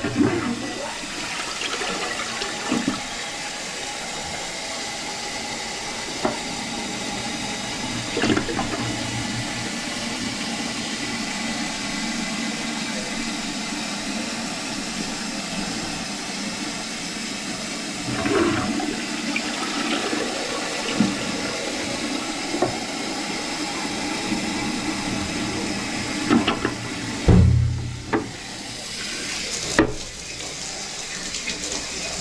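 Toilet flushing, with a long steady rush of water into the bowl, a few light knocks, and a heavy low thump near the end.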